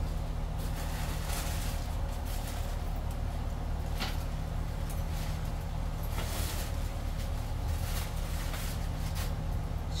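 Paper stuffing rustling and crinkling in short bursts as hands dig inside a leather hobo bag, over a steady low hum.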